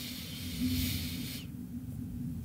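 A person breathing in slowly and deeply through the nose, a soft airy hiss that stops about one and a half seconds in.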